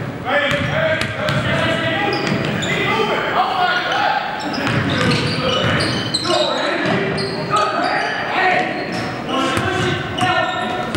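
Basketball bouncing on a hardwood gym court during play, with sneakers squeaking on the floor and players' voices calling out across the hall.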